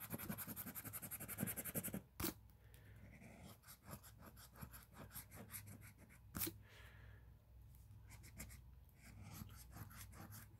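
Scratch-off lottery ticket being scratched: rapid back-and-forth strokes for the first two seconds, then slower, lighter scratching. A couple of sharp clicks come about two and six seconds in.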